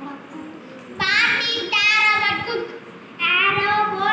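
A child's voice singing three drawn-out phrases, each held for under a second with a wavering pitch, with short pauses between.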